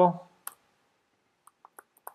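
A few light computer keyboard keystrokes: one about half a second in, then a quick run of three or four fainter ones near the end.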